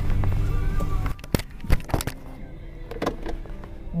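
Music in a car cabin, broken by a quick run of sharp knocks and clicks from the handheld camera being handled and set down about a second in, after which the sound is noticeably quieter.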